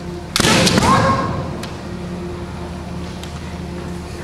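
A kendo attack: a fencer's loud kiai shout together with bamboo shinai striking and a stamping footfall, one sudden burst under a second long about a third of a second in.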